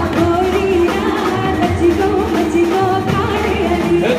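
A woman singing a Gujarati-Hindi song medley through a microphone with a male singer, over live band accompaniment with keyboard, amplified through a PA system.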